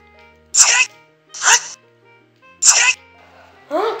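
A boy's voice in three short, garbled bursts that cannot be made out, over steady background music.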